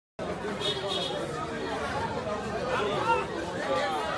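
Several people talking over one another, a babble of voices with no single speaker standing out.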